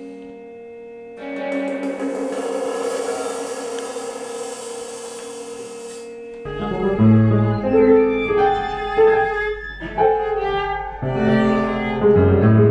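Chamber ensemble playing slow, quiet contemporary music. It begins with held sustained tones and a suspended cymbal's bright wash, which swells in about a second in and fades near six seconds. From about six and a half seconds piano, violin and cello play slow, separate notes over low bass notes.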